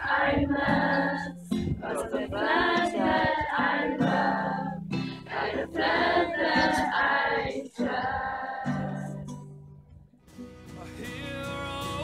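A group of girls singing together from song sheets to acoustic guitar accompaniment, in phrases with short breaths between them. The singing fades out about ten seconds in, and picked acoustic guitar notes carry on alone.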